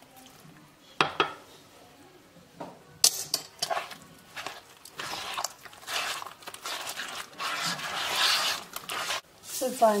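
Soft butter dough being squished and worked by hand in a plastic bowl: irregular wet squelching and rustling from about three seconds in. Two sharp knocks about a second in, as a spoon hits the bowl.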